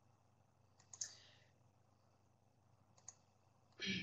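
Near silence broken by two faint, brief clicks, one about a second in and one about three seconds in.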